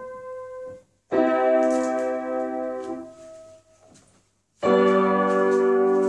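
Piano chords played with a prosthetic chord-playing rig on one arm and the other hand. A ringing chord fades out, a new chord is struck about a second in and dies away, then another is struck near the end and rings on.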